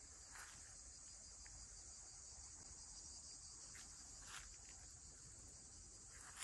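Faint, steady, high-pitched insect chorus, with a couple of faint brief noises about half a second and four and a half seconds in.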